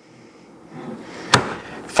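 A thick end-grain wooden cutting board set down on a kitchen countertop, giving a single sharp wooden knock a little over a second in, after some faint handling sounds.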